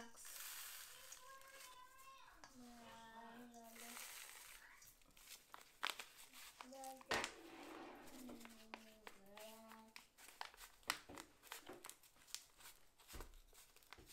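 Faint crinkling and rustling of a kraft paper zip-top bag and thin plastic gloves, with scattered small clicks, as bath salts are scooped by hand into the bag. A soft voice comes in twice, murmuring or humming without clear words.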